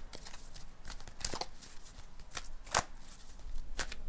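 An oracle card deck being shuffled by hand: irregular soft flicks and slaps of cards against one another, a few sharper ones about a second in, near three seconds and near the end.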